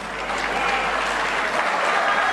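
Applause from a large audience, swelling quickly at the start and then holding steady.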